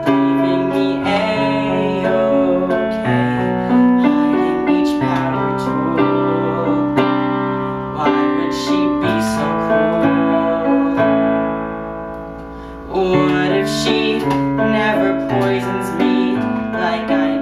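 A young man singing a slow ballad to piano accompaniment, with the piano the most prominent part. The sound thins out briefly about twelve seconds in, then the piano comes back in.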